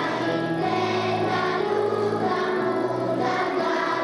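Children's choir singing, holding long notes.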